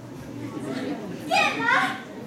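A short, very high-pitched child-like voice calling out once about a second and a half in, its pitch rising then falling, over a low murmur of voices.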